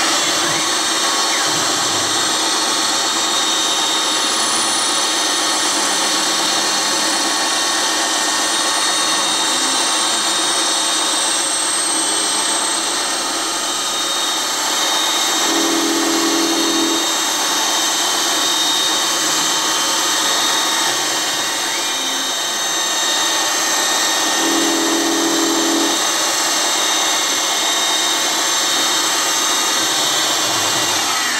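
CNC milling machine spindle running a single-lip carbide cutter, milling a radius into a small carbon-steel part. It is a steady, many-toned machine whine that starts suddenly, with a brief lower hum rising twice, about halfway and near the end.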